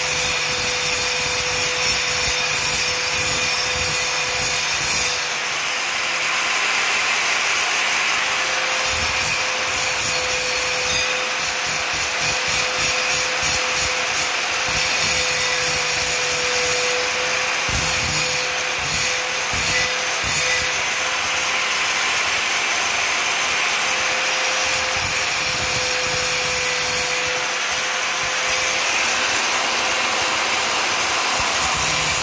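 Electric angle grinder running with a steady high whine, its abrasive disc grinding down the sharp, irregular edges of a steel mason's trowel blade. The grinding noise swells and eases as the disc is pressed on and lifted off the metal.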